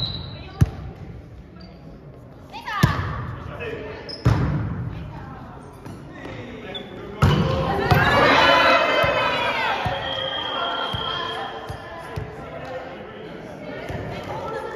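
Indoor volleyball rally in a large gym hall: several sharp smacks of the ball being struck, then a loud burst of players shouting and cheering about seven seconds in, trailing off into chatter.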